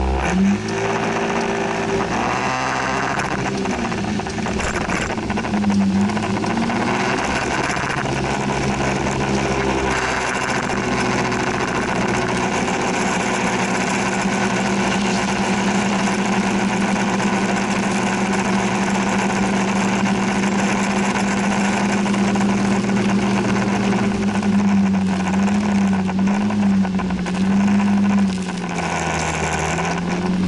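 Motor scooter engine pulling away, its pitch rising and wavering, then running at a steady cruising pitch under a constant rush of noise. Near the end the pitch wavers, dips briefly and climbs again.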